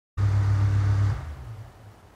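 Electric desk fan's motor humming steadily, then fading away over about a second about halfway through as the timer-controlled relay cuts its power.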